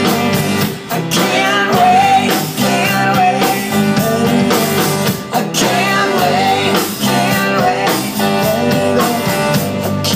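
Live rock band playing loud: electric guitar, bass guitar and drum kit, with a steady drum beat.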